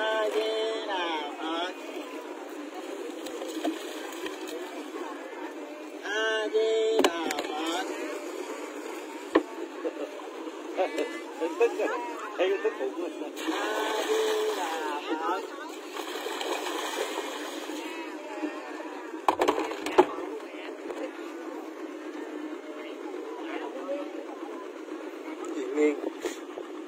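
People talking over a steady background hum, with water and a carp poured from a bucket into the river, splashing, about fourteen seconds in.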